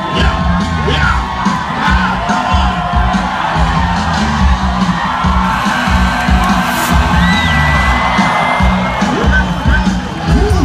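Music with a heavy, steady beat over a rodeo crowd cheering, yelling and whooping, with a long held high call in the second half.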